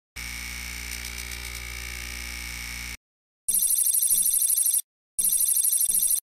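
Advertisement sound effects: a steady electronic tone for about three seconds, then a rapidly warbling telephone-style ring in bursts of about a second and a half with short gaps.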